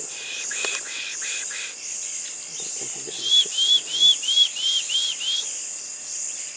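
A bird giving a run of about seven quick whistled notes, each rising and falling, about three a second, starting about halfway through. Under it runs a steady, high, pulsing chorus of insects.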